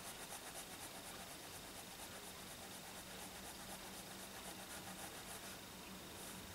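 Faint, scratchy rubbing of a Micron 01 fineliner's felt nib on paper as it colours in with short back-and-forth strokes, several a second.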